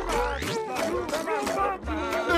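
Cartoon soundtrack: wordless character voices over background music.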